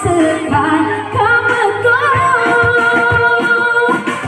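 Woman singing live through a microphone over electronic keyboard accompaniment with a steady beat, holding one long note through the second half.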